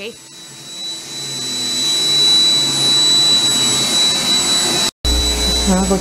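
A small electric motor-driven appliance with a steady high whine and a rush of air that grows louder over a few seconds. The sound cuts off abruptly about five seconds in.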